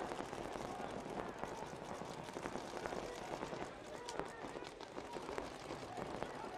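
Outdoor ambience of a paintball field during a live point: scattered pops of paintball markers firing, with faint distant voices.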